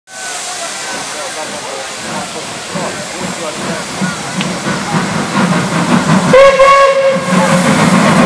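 Steam locomotives hissing steam as they move off, growing louder. A steam whistle sounds one steady blast for about a second near the end.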